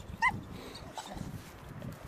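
Staffordshire bull terrier giving one short, high-pitched whine about a quarter second in as she pulls on her lead.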